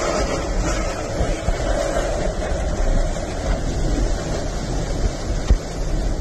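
Hurricane-force wind buffeting a car, heard from inside the cabin: a steady rushing noise with a heavy low rumble, and a brief thump near the end.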